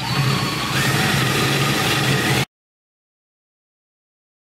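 Cordless drill running under load, boring a 3/8-inch hole through the rusty steel fuel pickup plate: a steady motor whine with the grind of the bit. It stops abruptly about two and a half seconds in.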